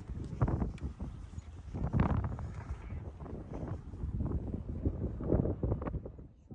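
Wind rumbling on the microphone, with irregular knocks and thumps; the louder ones come about half a second in, two seconds in and near the end.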